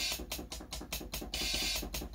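Drum-machine hi-hat samples triggered from a MIDI keyboard: a quick run of sharp ticks, several a second, with two longer hissing hits, one at the start and one just past the middle.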